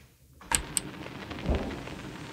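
A tall built-in refrigerator door being handled: a sharp click about half a second in, then a soft low thud about a second and a half in as the door swings shut.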